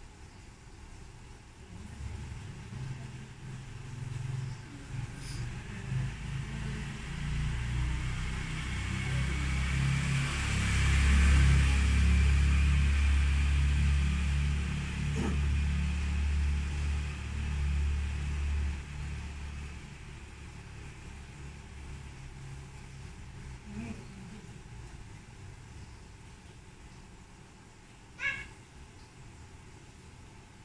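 A motor vehicle passing by: a low rumble with a hiss above it builds over several seconds, peaks about eleven seconds in and fades away by about twenty seconds. A sharp click comes near the end.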